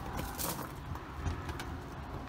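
Quiet low rumble of outdoor background noise, with a couple of faint light knocks.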